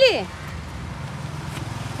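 A steady low engine hum in the background, with a woman's voice briefly at the very start.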